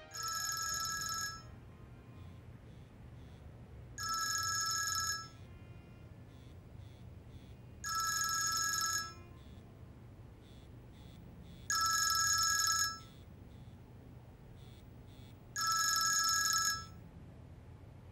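A phone ringtone ringing for an incoming call: five rings, each about a second long, repeating about every four seconds.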